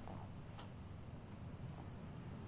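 Hands massaging a bare foot, soft and faint over a low steady room hum, with one faint sharp click about half a second in.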